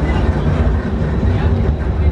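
Ferry engines running with a steady low rumble, with faint voices in the background.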